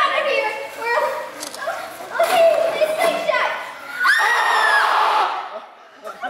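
Children's voices shouting and crying out without clear words, with a held shout about two seconds in and a long high-pitched scream about four seconds in.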